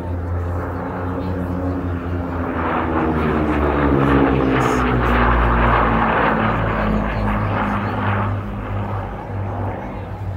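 Twin-engine propeller aircraft making a low pass. Its engine drone builds to a peak about halfway through, then drops in pitch as it goes past and moves away.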